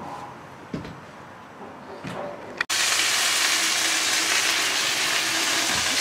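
Quiet at first. Then, about two and a half seconds in, a steady sizzling hiss starts abruptly and holds: steaks searing in a cast iron skillet heated to about 500 degrees.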